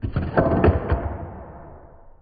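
Spring-loaded wooden fascia board of a Georgian mahogany writing slope snapping open as its hidden release button is pressed: a sudden clack, then a few wooden knocks and a rattle that fade over about a second and a half as the board springs free of its catch.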